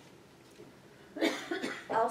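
Quiet room tone, then a person coughing in a short burst starting about a second in.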